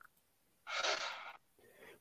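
A single breath, a soft sigh-like exhale close to the microphone, lasting under a second; otherwise near silence.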